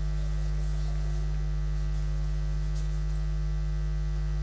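Steady electrical mains hum: a low, unchanging buzz with a ladder of higher overtones above it.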